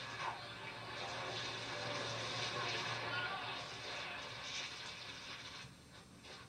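A football game broadcast playing from a television, picked up across the room: a steady noisy haze with faint voices, and a low hum for about the first three seconds, growing quieter near the end.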